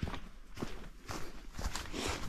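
Footsteps of a hiker walking on a trail, a few uneven steps.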